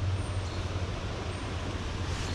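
Steady rushing of a flowing stream's current over a shallow riffle.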